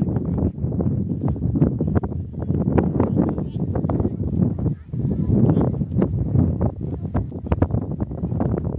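Wind buffeting the camera's microphone, an uneven low rumble with gusty thumps and brief lulls.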